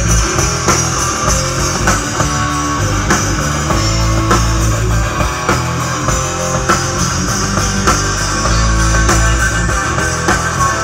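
Live rock band playing loud: electric guitars over a drum kit.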